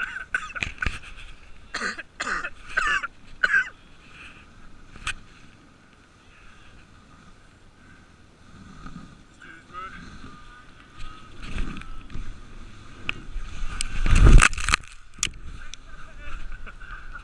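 Dogsled runners hissing and scraping over packed snow, with scattered knocks and rattles from the sled. About two seconds from the end comes a loud tumbling crash as the sled tips over and the rider spills into the snow.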